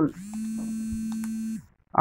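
A person's voice holding a steady, flat-pitched hum for about a second and a half and then stopping abruptly, like a hesitation "mmm" between phrases.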